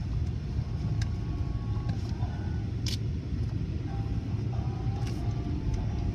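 Steady low rumble of a car idling and creeping forward, heard from inside the cabin, with a few faint clicks.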